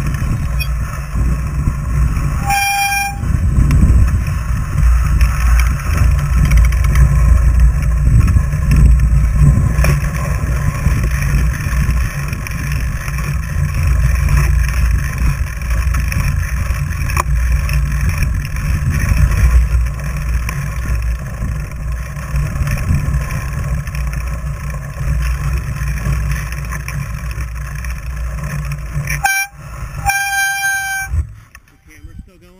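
Fat bike rolling along a packed snow trail, heard as a steady low rumble of the tire and frame through the bike-mounted action camera. Two brief high-pitched squealing tones cut in, one about three seconds in and one near the end.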